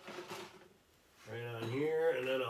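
A brief scraping, rustling noise in the first half second, then a man's voice talking from about a second and a half in.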